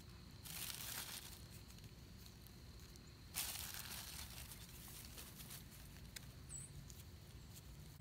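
Faint rustling and crinkling from hands planting gladiolus corms in loose soil while holding the corm packet and plastic bag, in two short spells about three seconds apart, with a few tiny clicks.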